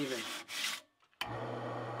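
Wood lathe motor humming steadily while a flat sanding block rubs along a spinning maple rolling-pin blank, smoothing down the ridges left by turning. The rasping starts abruptly a little past a second in.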